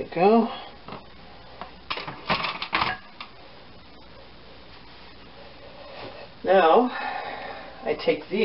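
A quick run of sharp clinks and knocks about two seconds in, as a glass mixing bowl with a silicone spatula in it is set down on a metal sheet pan. Short wordless voice sounds at the start and again near the end.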